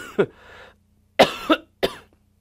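A man coughing: several short, sharp coughs in two bouts, one at the start and another a little over a second in.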